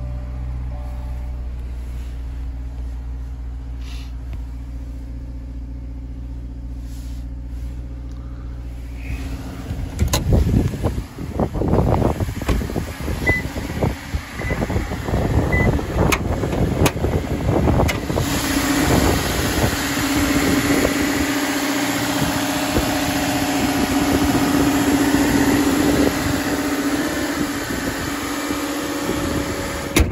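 Subaru Crosstrek's flat-four engine idling, a steady low hum heard inside the cabin. About ten seconds in, gusty wind buffeting the microphone takes over and grows stronger from around the middle.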